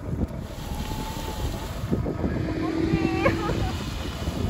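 Wind buffeting the microphone as a steady low rumble, with a few faint high chirps and a thin held tone about midway.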